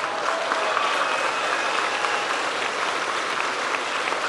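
Large crowd applauding steadily.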